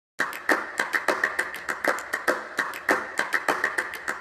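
Rhythmic percussion in the opening of a music soundtrack: a quick, steady run of sharp hits, several a second, before any melody comes in.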